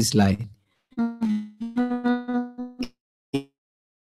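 A musical instrument sounds a short run of steady notes at much the same pitch, then two short sharp clicks follow half a second apart.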